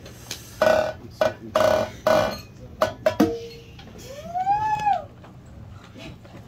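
Scattered playing from the band on stage: three short loud hits in the first two seconds, a brief held note about three seconds in, then a single note that slides up and back down.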